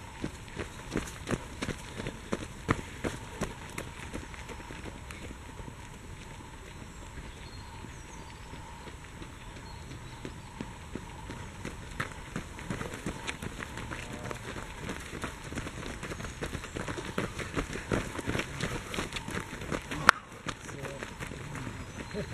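Running footsteps of race runners passing close by on a dirt forest trail strewn with dry fallen leaves, as irregular footfalls. They are thick at first, thin out for several seconds, then build again as a new group of runners approaches. One sharp click stands out shortly before the end.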